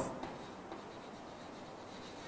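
Chalk writing on a blackboard, faint.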